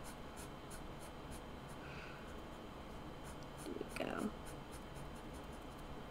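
Black felt-tip marker scratching on sketchbook paper in quick short strokes, about three a second, as areas are filled in. A brief vocal sound breaks in about four seconds in.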